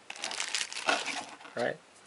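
Plastic packaging bag crinkling in the hands, in a run of irregular crackles.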